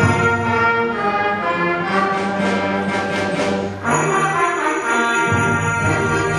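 School concert band of woodwinds and brass playing sustained chords. A bright shimmer of percussion comes in about two seconds in and stops just before the four-second mark.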